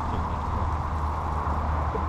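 Steady low rumble of outdoor background noise with no clear events.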